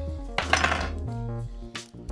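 Background music with held notes, over the light clinking of ice and a bar spoon as a drink is stirred in a glass. A short rushing noise comes about half a second in.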